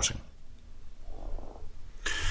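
Faint low background hum of the narration recording between sentences, with a brief soft sound just past the middle.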